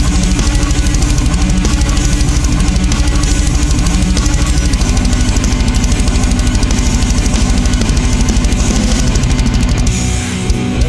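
Heavy rock song with distorted electric guitars over a very fast, steady kick-drum beat.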